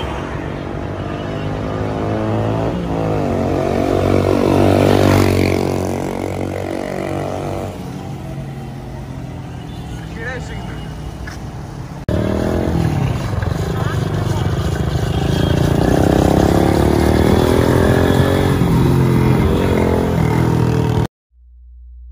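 Kawasaki Caliber motorcycle engine running as the bike is ridden past, its pitch climbing to a peak about five seconds in and then falling away. After an abrupt cut, the engine runs again as the bike rides toward the camera, rising in pitch once more before the sound cuts off suddenly near the end.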